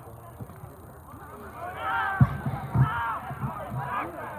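Several people shouting outdoors, starting about halfway in, in high calls that rise and fall. Two short dull thumps come among the first shouts.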